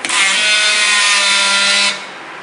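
DeepJoint T200 battery-powered strapping tool's motor running in one loud, steady burst of about two seconds with a whine, then cutting off abruptly.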